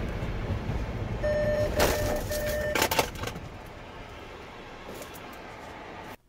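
A car's forward-collision warning beeping three times in quick succession over cabin road noise as automatic emergency braking hauls the car down to a stop, with a couple of sharp knocks around the beeps. The road noise drops off after the braking as the car comes nearly to a standstill.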